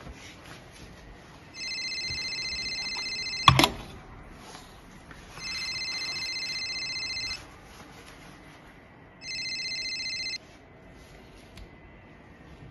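Mobile phone ringtone ringing three times: electronic ring bursts of about two seconds each, separated by gaps of about two seconds. The third ring is cut short as the call is answered. A single sharp knock about three and a half seconds in.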